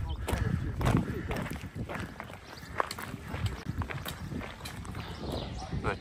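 Footsteps of someone walking on a dirt and gravel trail, a scatter of short knocks, with wind rumbling on the microphone underneath.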